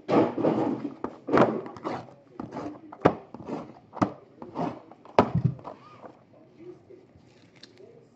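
Shrink-wrapped Panini Pantheon card boxes being handled, shuffled and set down on a stack: a quick run of thunks and knocks mixed with wrapper and sleeve rustling over the first five seconds or so.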